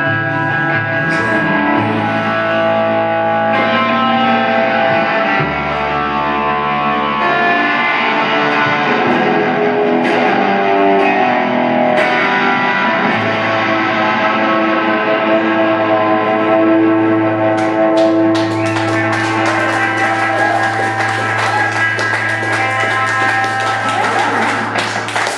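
Live Telecaster-style electric guitar and upright double bass playing an instrumental passage with no vocals. Held guitar notes ring over a steady bass line.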